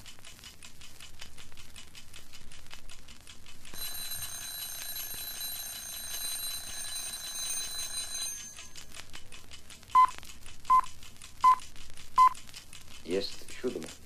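The quiet opening of a track played from a vinyl record, with surface crackle throughout. A steady high ringing tone holds for about four seconds, then four short beeps come about three-quarters of a second apart. A brief voice follows near the end.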